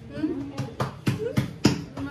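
Hands patting and slapping bhakri dough flat, a quick run of slaps at about four a second starting about half a second in.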